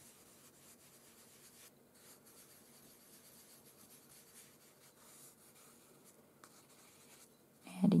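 Faint rubbing of pastel pigment on paper as it is blended into the background.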